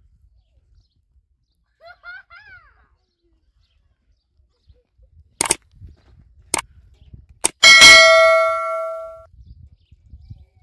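Subscribe-button overlay sound effect: three sharp mouse-like clicks about a second apart, then a loud bell ding that rings out for about a second and a half. A brief chirping call sounds near two seconds in.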